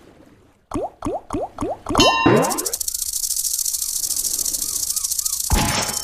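Online slot game sound effects during a reel spin: about six short, sharp zips that drop quickly in pitch, then a continuous high, fast rattle for about three seconds that ends in a thud as the reels land.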